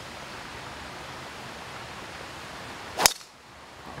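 A golf driver striking a ball off the tee: one sharp crack about three seconds in, over a steady background hiss.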